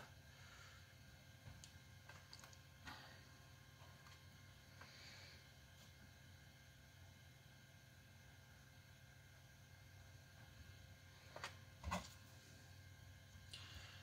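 Near silence: room tone with a few faint, short handling clicks as leather and epoxy are worked into a plywood groove, two of them a little louder and close together near the end.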